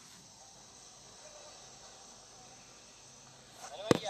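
Steady faint chirring of crickets in woodland. Near the end comes one sharp, loud knock, and then a voice.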